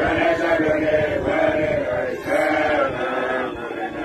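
A group of Basotho male initiates chanting in unison, a deep men's song in short phrases that rise and fall about once a second.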